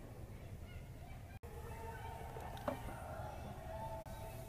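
Faint indoor ice-rink ambience: a steady low hum with faint distant voices, and a single sharp knock about two-thirds of the way through, typical of a stick or puck striking during play.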